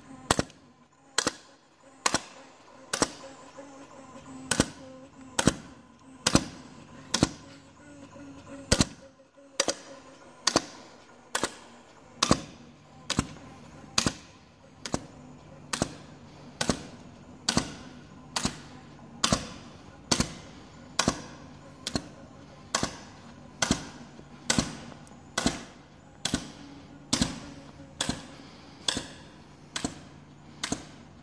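Automatic hole punching machine punching holes in a music-box paper strip: sharp punch clicks a little over once a second, some in quick pairs, over a low steady hum.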